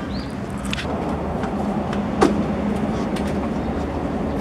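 Steady motor-vehicle rumble with a constant low hum, and a single sharp click a little past halfway.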